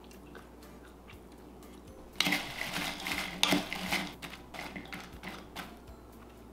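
A wooden spoon stirring and scraping sauce-coated soy curls around a bowl. The scraping starts about two seconds in as a quick run of strokes and tapers off near the end.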